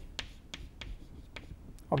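Chalk writing on a blackboard: a run of short, sharp clicks as the chalk taps and strikes the board, about six in two seconds.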